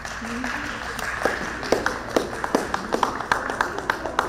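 A few people clapping hands: scattered, uneven claps that start about a second in and keep going, under low voices.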